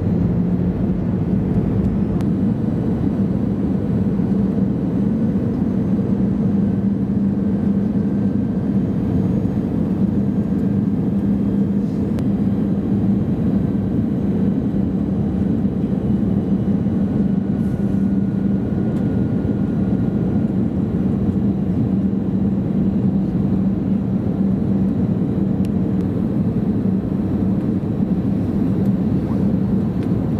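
Steady cabin noise inside an Airbus A320-200 airliner descending on approach: constant engine and airflow noise with a steady low hum.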